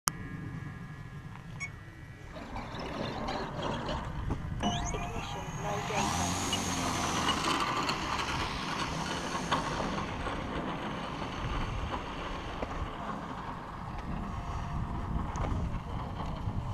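Engine and propeller of a 95-inch Extra 330 RC aerobatic plane running. It is throttled up about two seconds in and runs loudest from about six seconds on the take-off run.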